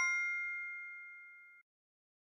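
Quiz-show correct-answer chime: the ringing tail of a bright two-strike ding, fading steadily and stopping about one and a half seconds in.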